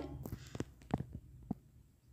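A handful of faint, sparse clicks and taps of a steel spoon against a non-stick frying pan as cooking oil is spooned in.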